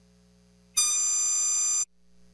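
A single steady electronic tone, like a buzzer or beep, about a second long, starting abruptly near the middle and cutting off suddenly: a broadcast transition sound as the show cuts to a commercial break.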